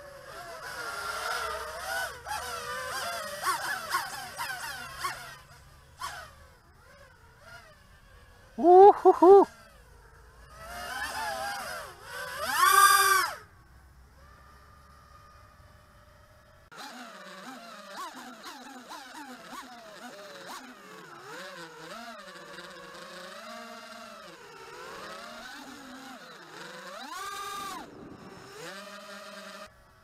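Eachine Wizard X220 racing quadcopter's brushless motors whining, the pitch rising and falling with the throttle. There are two short, loud rising bursts of full throttle about 9 and 13 seconds in, then a steadier whine that wavers in pitch.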